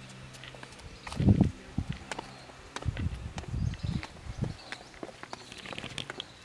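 Footsteps of the person filming on a stone-paved path, heard as low thumps through the handheld camera: one loud thump about a second in, then a run of softer steps between about three and four and a half seconds.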